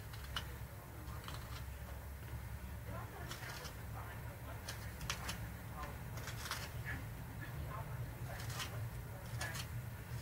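Carving knife whittling a wooden mallard decoy head: faint, irregular short scrapes and clicks of the blade cutting into wood, over a steady low hum.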